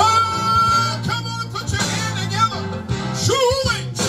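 Live gospel band music with a steady bass line and guitar. A high note is held through the first second, and a sung phrase with bending pitch comes near the end.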